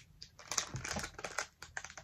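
Crinkly mystery-bag wrapper being handled and opened by hand: a quick, irregular run of small crackles and clicks.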